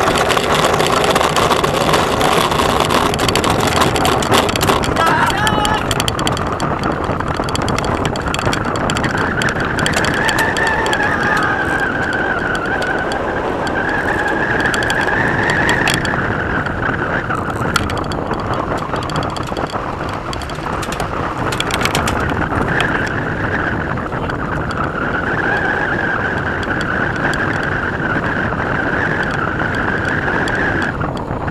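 Steady wind rush and airframe noise on a camera mounted on a human-powered aircraft during its run down the runway, with a high whine that wavers in pitch throughout and a few sharp clicks in the middle.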